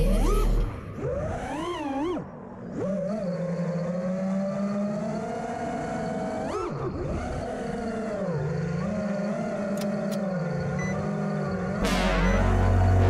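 FPV quadcopter's brushless motors whining, the pitch rising and falling with the throttle. The sound drops away briefly about two seconds in and jumps up and back sharply just past six seconds.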